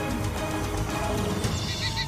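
Documentary soundtrack music with the sound-effect panting of a Daeodon, an extinct pig-like entelodont. The breathy panting grows stronger near the end.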